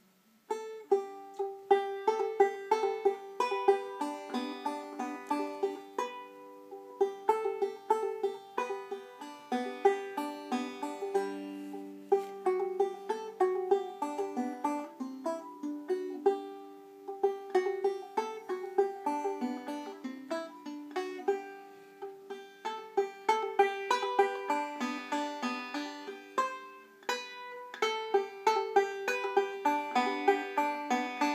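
Five-string banjo in open G tuning playing a simple instrumental tune, a quick run of plucked notes starting about half a second in.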